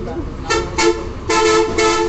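Vehicle horn honking four short toots in two quick pairs, each a steady two-tone blast.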